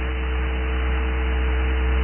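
Steady electrical mains hum with an even hiss under it, the background noise of the recording, with no speech.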